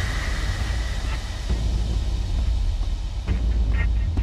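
Trailer sound design: a steady low droning rumble, with a high ringing tone fading out over the first second or so and a few short sharp ticks near the end.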